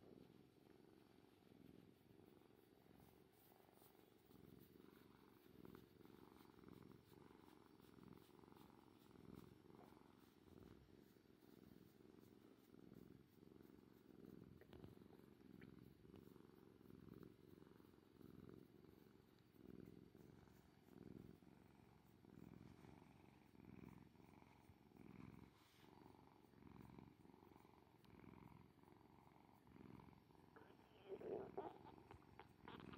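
Ginger tabby cat purring while being stroked under the chin. The purr is faint and low, swelling and fading about once a second.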